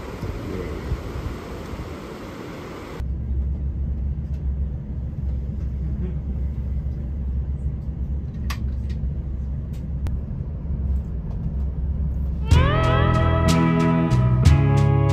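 Steady low rumble of a train running, heard from inside the carriage, after about three seconds of rushing river water. Acoustic guitar music starts near the end.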